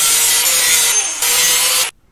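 Angle grinder with an abrasive disc grinding a welded corner of a steel angle-iron frame: a loud, steady grinding whine that dips briefly about a second in and cuts off suddenly near the end.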